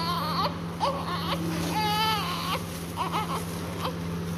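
Newborn baby, minutes after birth, crying in short high-pitched cries, with one longer wavering cry about two seconds in. A steady low hum runs underneath.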